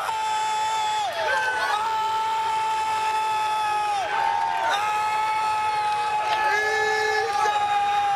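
A man yelling in celebration of a home run in three long, high-pitched held shouts, each dropping in pitch as it ends. Other fans' voices shout along briefly over a crowd in the background.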